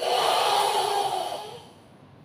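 A karateka's forceful breath out during the Sanchin kata, pushed hard through the mouth and throat with the body tensed: a loud hissing exhale that starts suddenly and fades away over about a second and a half.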